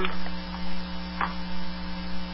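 Steady low electrical mains hum on a recorded telephone call line, with a faint click just after a second in.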